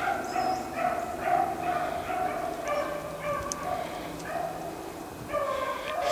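Beagles baying, a run of overlapping pitched calls with hardly a break.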